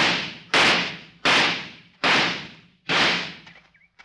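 Five gunshots fired one after another, a little under a second apart, each with a short ringing tail: target shooting on a firing line.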